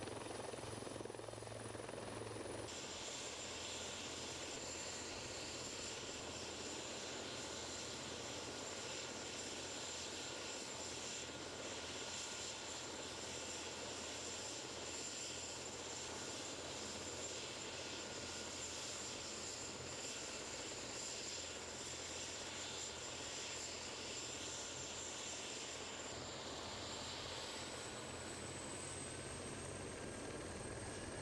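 Helicopter engine and rotor running steadily, a rushing noise with a thin high-pitched turbine whine over it. The whine rises slightly in pitch near the end.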